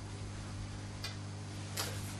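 Room tone in a pause: a steady low hum with a faint click about a second in and another near the end.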